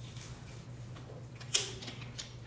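A woman drinking from a bottle, over a faint steady low hum. A short breathy sound comes about one and a half seconds in.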